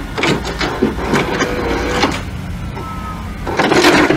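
VHS tape-loading sound effect: a run of mechanical clicks and clunks over a steady hum, with a louder clatter near the end.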